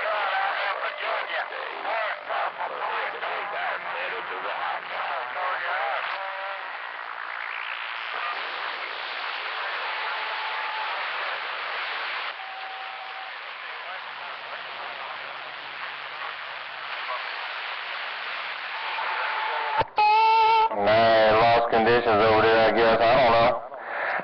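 CB radio receiver hissing with static and faint, garbled distant voices, with a couple of brief whistling tones in the middle. About 20 seconds in a much stronger station comes through loud and clear with a man's voice.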